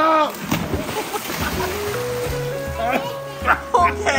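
A person jumps into a swimming pool: a splash just after the start, then water sloshing. Background music plays throughout, and voices call out near the end.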